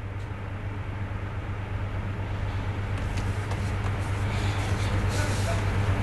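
Steady low hum with a rumbling noise on an open live-broadcast audio line, slowly growing louder and cutting off abruptly at the end.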